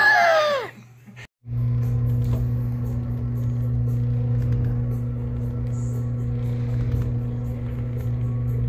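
A short burst of laughter, then, after a brief cut, a steady low machine hum with no rise or fall.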